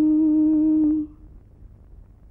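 A woman's voice humming one long, steady held note that stops about a second in.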